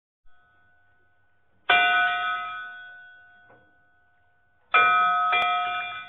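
A bell struck twice, about three seconds apart. Each strike rings out and fades away over about two seconds.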